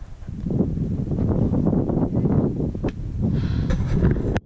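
Rough rumbling of wind and handling noise on an action camera's microphone as the camera is moved, starting about half a second in, with a couple of light knocks near the end.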